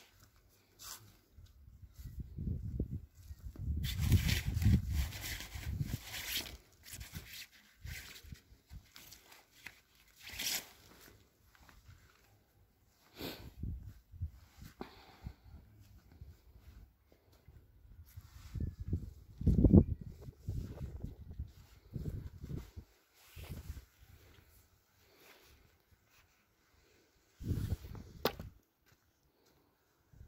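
A garden hoe scraping and dragging loose soil in irregular strokes, with rustles and dull knocks and short quiet pauses between the strokes.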